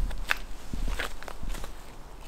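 Footsteps crunching on dead leaves and earth on a forest trail: about four separate steps, roughly half a second apart.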